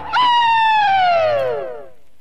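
A single pitched tone, with its overtones, sliding steadily down from a high note to a low one over about a second and a half and fading out: a musical falling glide in the gap between songs.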